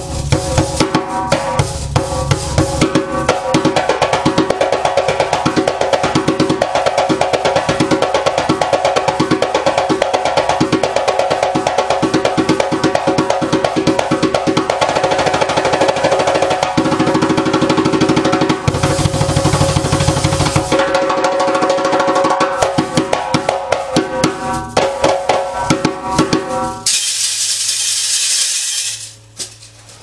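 Solo djembe with its skin tuned very tight, played with bare hands in a fast, continuous rhythm of sharp strokes. The playing stops a few seconds before the end.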